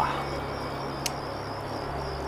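Crickets chirping steadily in the background, over a low steady hum, with one short click about a second in.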